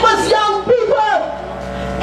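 A voice singing in long, gliding phrases, with a similar phrase repeating.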